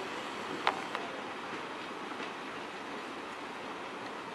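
Passenger train rolling away over the station tracks with a steady rumble, its wheels clacking sharply twice over rail joints about a second in.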